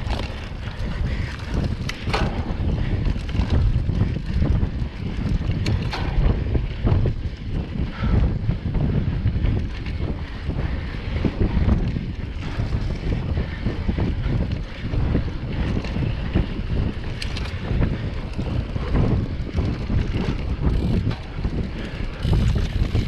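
Mountain bike rolling fast along a dirt singletrack, heard as a rough rumble of tyres and trail vibration with wind buffeting the camera's microphone, and a few sharp clicks or rattles from the bike.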